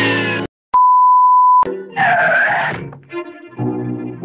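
Cartoon soundtrack music with brass ends on a falling note and cuts to a brief silence. A loud, steady single-tone beep follows, lasting just under a second. Then comes a short cry-like sound and more music.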